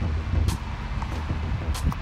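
A steady low rumble with a few short clicks, one about half a second in and two near the end.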